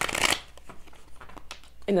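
Tarot cards being shuffled by hand: a short riffle in the first moment, followed by a few faint taps and slides of the cards.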